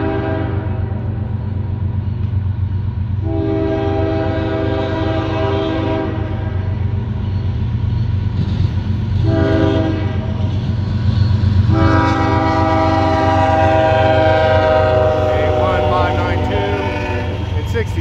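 Freight diesel locomotive's multi-chime air horn sounding the grade-crossing pattern: the end of one long blast, then a long, a short and a final long blast, which slides down in pitch as the locomotives pass. A steady low diesel engine rumble runs beneath.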